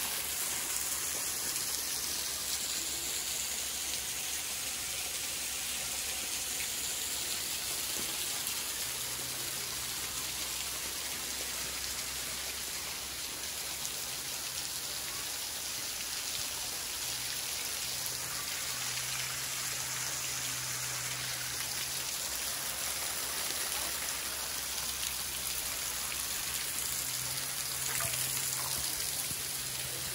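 Water falling in drops and thin streams from an overhanging rock ledge, pattering and splashing onto rock and gravel below. It makes a steady, rain-like patter with no change.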